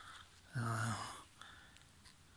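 Speech only: a man's short breath, then one hesitant, drawn-out 'euh'.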